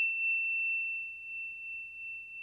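A single high, bell-like ding rings on as one pure, steady tone. It was struck just before, and fades slowly with nothing else under it.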